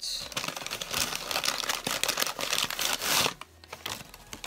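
Paper bag rustling and crackling as a bath bomb is taken out of it, dense and continuous for about three seconds, then stopping shortly before the end.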